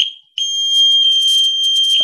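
Arduino-driven electronic buzzer beeping: a brief blip, then a steady high-pitched tone that starts under half a second in and holds on.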